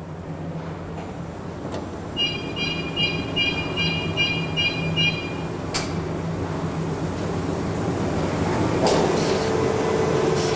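Sheet-fed offset printing press running with a steady mechanical noise. A rhythmic high pulsing comes in about two seconds in and lasts some three seconds. Near the end the machine grows louder and a steady tone joins.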